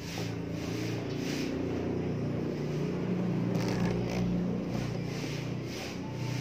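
A motor vehicle engine running: a steady low hum that grows louder through the middle and eases off toward the end.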